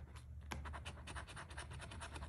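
A coin scratching the latex coating off a paper scratch-off lottery ticket in quick, faint repeated strokes, pausing briefly near the start before resuming.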